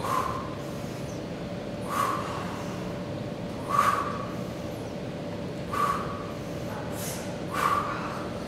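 A man breathing out sharply through each dumbbell triceps kickback rep, one forceful exhalation about every two seconds, five in all, over a steady background hum.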